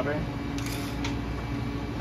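Steady low hum of a running fan, with a brief faint rustle about half a second in.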